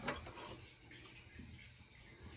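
Quiet handling sounds with a few faint ticks as the metal hopper lid of a Harman pellet stove is unlatched and swung open.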